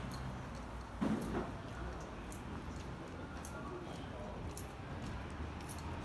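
Quiet city street at night: a steady low hum under scattered footstep clicks and faint voices of passers-by, with one louder knock about a second in.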